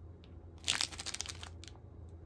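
Plastic wrapper of a Bub bath tablet packet crinkling in the hand: a quick run of crackles about half a second in, lasting under a second, then one more crinkle.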